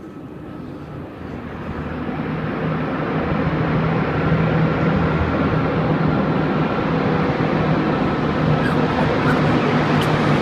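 Road traffic inside a road tunnel: vehicle noise swelling over the first four seconds into a loud, steady rush with a low engine hum underneath.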